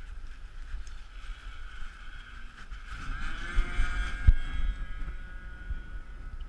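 Motor and rotors of a radio-controlled aircraft running with a steady high whine, rising in pitch about three seconds in as it powers up, with wind buffeting the onboard microphone and a single knock a little after four seconds.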